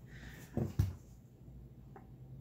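Two dull knocks about a quarter-second apart, the second louder: an object being set down on a work surface.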